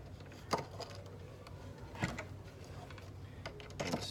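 Light knocks and clicks of wooden instrument parts being handled and pressed into place, two clear ones about half a second and two seconds in, with fainter ticks near the end, over a low steady hum.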